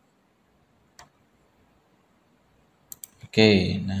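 Isolated sharp clicks from computer input devices: one about a second in, then two close together near three seconds. After that a man starts speaking.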